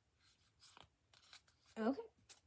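Faint rustling and sliding of Pokémon trading cards being fanned and shuffled in the hands, in a few short scrapes.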